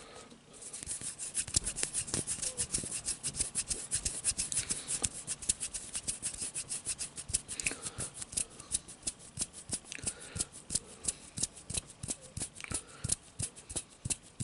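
Fingertips rubbing and scratching right against the microphone in fast, even strokes, several a second, starting about half a second in.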